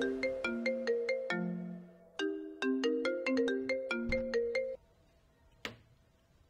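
A mobile phone ringing with a marimba-like ringtone melody that repeats after a short break and cuts off suddenly about five seconds in. A single short click follows.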